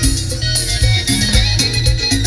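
Cumbia band playing live: a steady dance beat of percussion over a strong bass line.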